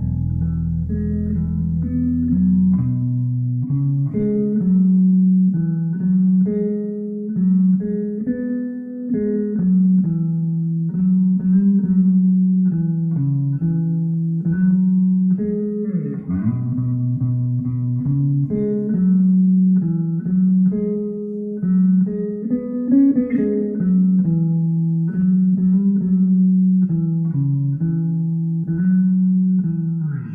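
Sadowsky NYC electric bass playing a melodic line of plucked notes, one after another. A deep low note is held under the line for about the first three seconds.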